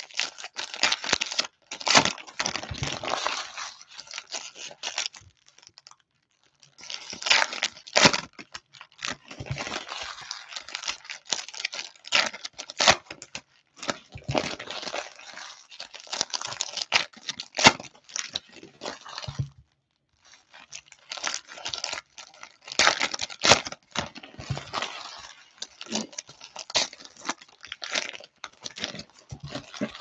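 Baseball trading card pack wrappers being torn open and crinkled by hand, in a run of sharp crackles with two brief pauses.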